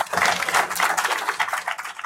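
Audience applauding: a dense patter of many hands clapping.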